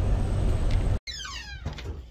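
Steady low rumble of a Freightliner semi-truck driving, heard inside its cab. It cuts off abruptly about a second in, and a much quieter scene follows with a short falling squeal and a few clicks.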